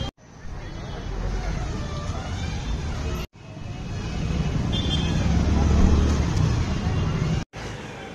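Busy roadside street ambience: traffic rumble and a babble of nearby voices. The sound cuts out briefly three times, where separate shots are joined.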